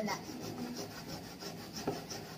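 Peeled raw cassava being grated by hand on metal graters: a steady run of rasping strokes, about four a second.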